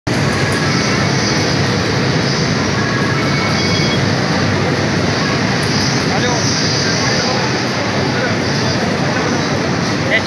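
Steady loud din of a garment-pressing floor: many vacuum ironing tables and steam irons running together, with voices mixed into the noise.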